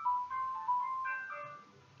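Soft background music: a light melody of a few held high notes, fading out near the end.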